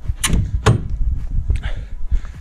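The door of a dome-shaped mountain refuge hut being handled, with two sharp knocks about half a second apart.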